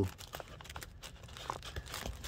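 Pleated cabin air filter for a 2016 Honda Pilot being handled and pressed into its plastic housing: faint, scattered crinkling and rustling with a few light clicks.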